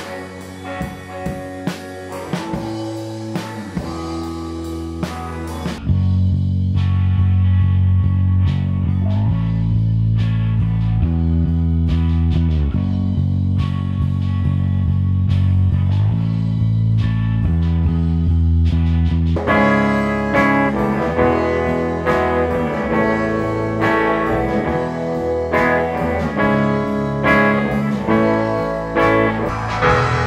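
A band playing live in one room, heard one isolated microphone track at a time. First come the drum overhead mics, with cymbals and drum hits. At about six seconds it switches to the bass guitar amp mic, playing deep, heavy bass notes. Near twenty seconds it switches to the upright piano mic, playing bright chords, with the other instruments bleeding faintly into each mic.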